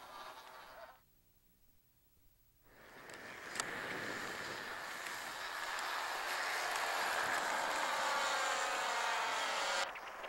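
Small model-aircraft engines of a four-engine radio-controlled B-17 scale model taking off: a buzzing drone that comes in after a second or two of near silence, grows steadily louder over several seconds, and cuts off suddenly near the end.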